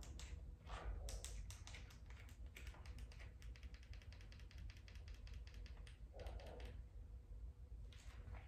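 Faint quick clicks and taps, coming thick and fast through the first half, then a soft rustle a little past the middle, over a low steady hum.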